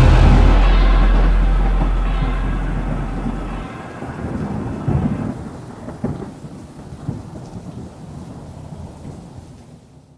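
Recorded thunderstorm: a deep rumble of thunder with rain hiss, fading steadily. The lowest part of the rumble stops abruptly about three and a half seconds in, a few sharp cracks follow around the middle, and it dies away near the end.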